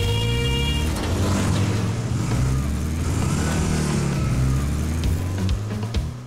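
Cartoon motorbike engine sound effects, revving with rising and falling pitch, over upbeat background music.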